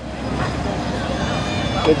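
Steady outdoor background rumble and hiss, with faint distant voices from about a second in.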